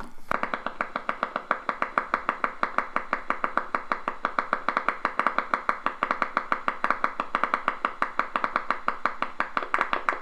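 EMG machine loudspeaker playing the needle-electrode signal from a voluntarily contracting tibialis anterior: a rapid, regular train of sharp pops, the steady firing of a motor unit, starting about a third of a second in.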